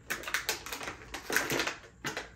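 Cardboard packaging being handled: a quick run of crackles, clicks and scrapes as a small device is worked out of its cardboard insert.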